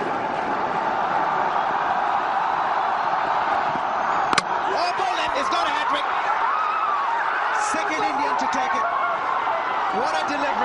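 Cricket stadium crowd noise, broken about four seconds in by a single sharp crack of the ball hitting the stumps for a hat-trick wicket. The crowd and fielders then cheer and shout.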